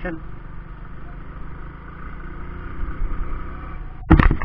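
Hero Splendor 100cc motorcycle's single-cylinder four-stroke engine running steadily while riding, heard from on the bike.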